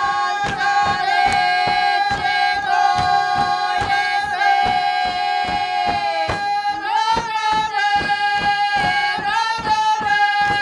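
A group of voices sings a traditional Sinj folk song in long held notes with slight slides, over the even stamping of dancers' feet on the stage, about three to four stamps a second. The song dips and rises again about six to seven seconds in.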